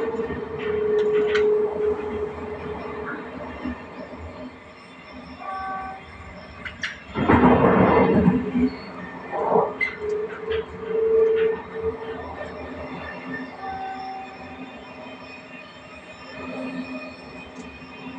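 Passenger train running along the track, heard from the front cab, with a mid-pitched tone that comes and goes. A loud, noisy burst lasting over a second comes about seven seconds in.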